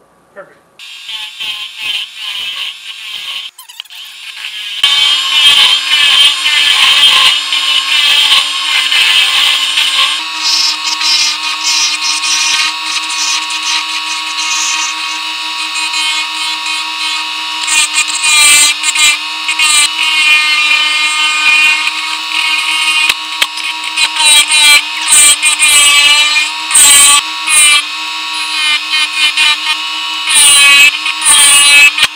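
Wood lathe turning a live oak finial blank while a hand-held turning tool cuts it, played at six times speed, so the motor hum and the cutting come out high-pitched and fast. It is fairly quiet for the first few seconds, then much louder from about five seconds in, once the cutting is under way.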